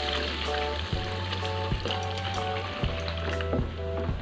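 Coconut milk poured into a wok of hot fried chilli spice paste, sizzling as a plastic spatula stirs it in, under background music with a steady beat.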